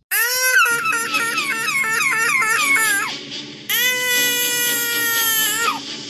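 Loud, exaggerated cartoon crying: a rising wail that breaks into quick sobbing warbles for about three seconds, then a second long wail that falls away near the end.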